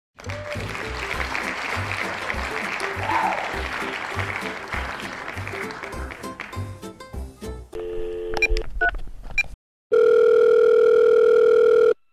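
Upbeat intro music with a steady beat for the first nine or so seconds. After a brief silence comes a loud, steady, unbroken telephone tone for about two seconds, the sound of a video call being placed.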